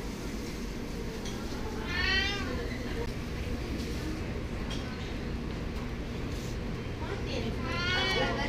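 A cat meowing twice: one short call about two seconds in, and another starting near the end.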